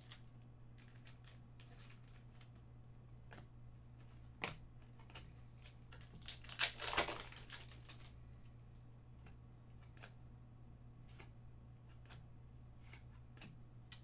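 Trading cards and a foil pack wrapper being handled: scattered light clicks of cards, and a crinkling rustle of foil about halfway through, over a faint steady low hum.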